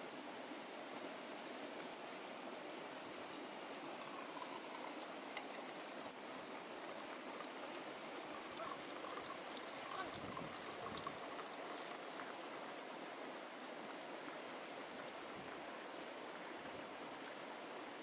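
Coffee poured from a small cezve into a stainless-steel mug: a thin stream of liquid trickling into the cup, starting partway through. Under it runs a steady rushing hiss.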